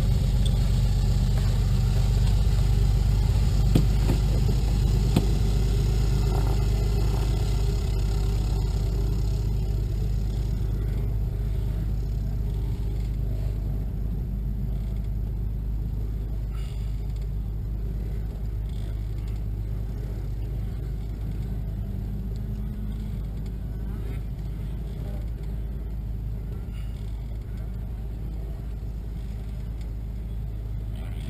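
A steady low engine rumble that slowly grows quieter.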